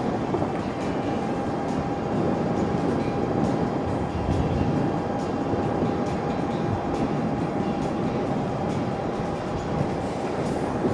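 Harley-Davidson LiveWire electric motorcycle cruising at a steady highway speed: even wind and road noise with a thin steady whine running through it.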